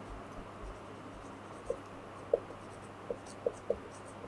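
Marker pen writing on a whiteboard: faint strokes with a few short, sharp squeaks from the tip, one near the middle and several in quick succession in the last second and a half.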